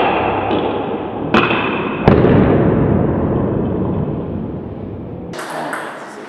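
Table tennis rally heard in a hall: two sharp knocks of the ball about a second and a half and two seconds in, the first with a short high ring. A long, low, fading rumble of hall noise follows and cuts off abruptly near the end.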